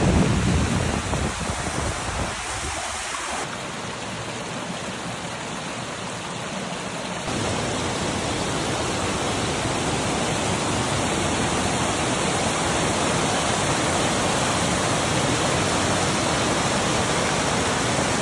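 Swollen mountain stream rushing in white water over rocks and small falls: a steady, even rush of water that drops a little a few seconds in and comes back louder about seven seconds in.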